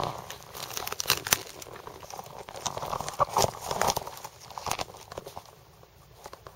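Dry reed stalks and twigs on a sandy beach crunching and crackling irregularly underfoot, in clusters about a second in and again around three to four seconds, dying down near the end.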